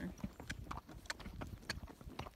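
Hoofbeats of a Tennessee Walking Horse stepping up into its four-beat flat walk on a dirt trail: a quick, uneven run of sharp hoof strikes.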